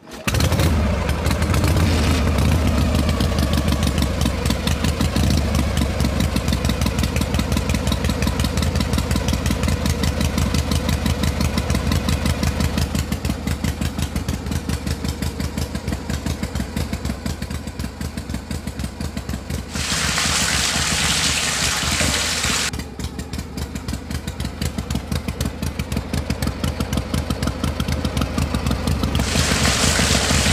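Small single-cylinder stationary engine starting and running with a fast, even chug, for a miniature model engine belt-driving a toy oil mill. A hiss joins it for a few seconds about two-thirds of the way in, and again near the end.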